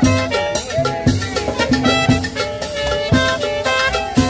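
Live Latin dance band playing a salsa-style tune: held horn notes over a drum kit keeping a steady, quick beat.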